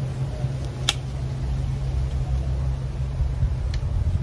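Steady low rumble throughout, with one sharp metallic click about a second in and a fainter one near the end as pliers work a piece of wire hanger.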